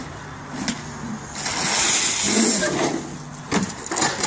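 A tub of water dumped over a person's head and body: a splashing rush lasting about a second and a half, beginning about a second and a half in. A knock follows near the end, with a steady low hum underneath.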